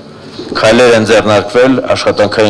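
Speech only: a man speaking into a microphone, starting again after a short pause.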